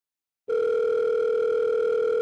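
Telephone ringback tone on the calling line: one steady burst of ringing tone that starts about half a second in.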